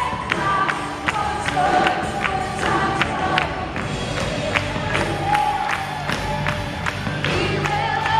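Live worship music: a band and crowd singing an upbeat song, driven by a steady beat of sharp hits about three a second.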